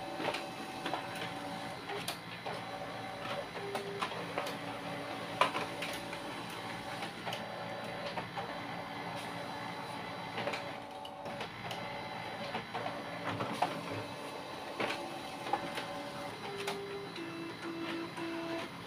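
Canon imageCLASS MF229dw laser multifunction printer running an automatic two-sided copy job: the document feeder draws the originals through while the print engine feeds and turns the sheets. It makes a steady mechanical whirr, with motor tones that switch on and off every second or so and scattered clicks.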